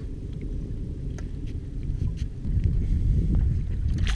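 Low wind rumble on the microphone of a small open boat, with water moving against the hull, growing louder about halfway through, and a few faint clicks.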